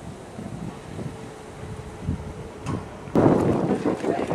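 Wind buffeting the microphone as a low rumble, with a faint steady hum underneath. About three seconds in it gives way abruptly to louder noise from a crowd of people outdoors.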